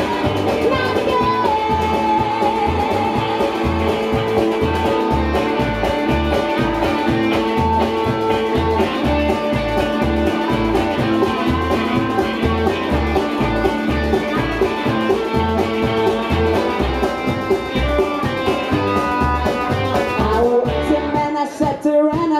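Live trash-country band playing an instrumental passage: upright bass keeping a steady pulse under drums and electric guitars, with a guitar playing a melody line. Near the end the bass and drums drop out for a break.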